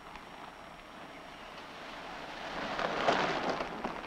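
A car driving in on a dirt road, its tyres crunching over gravel, growing louder to a peak as it passes close about three seconds in, then fading.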